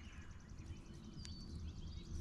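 Faint birdsong: scattered short chirps and whistled calls, with a fast faint trill, over quiet outdoor background.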